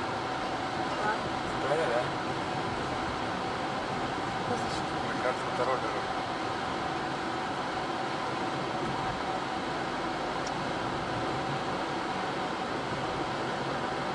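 Car interior while driving at low speed: steady engine and tyre noise with a faint steady tone running through it.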